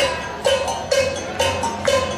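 A metal bell of the cowbell kind, struck in a steady beat of about two strokes a second, each stroke ringing briefly at a clear pitch, as part of West African-style percussion accompaniment.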